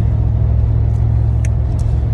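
Steady low rumble of a car heard from inside the cabin, with a small click about one and a half seconds in.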